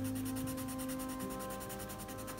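Soft background music of held, sustained notes, the chord shifting a little past halfway. Faintly under it, the scratch of a coloured pencil shading on sketchbook paper.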